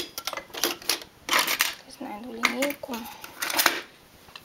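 Metal latch needles of a hand-operated knitting machine and a steel needle-pusher ruler clicking and clattering as needles are pushed back out of work. Quick clicks, with two longer rattling clatters, one near the middle and one near the end.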